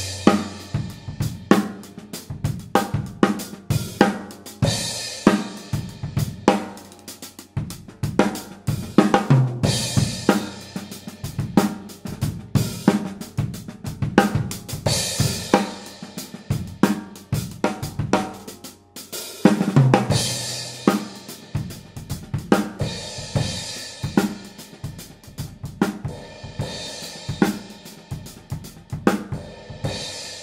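Drum kit playing a steady groove on hi-hat, snare and bass drum, with a Zildjian 15-inch K Constantinople crash cymbal struck about every five seconds and left ringing. The crash sounds really dark and low-pitched.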